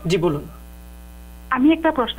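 Steady electrical hum on a telephone call-in line, a buzz with many overtones filling a gap in a caller's speech. Speech runs for the first half second, with a click near the start, and the speech returns about a second and a half in.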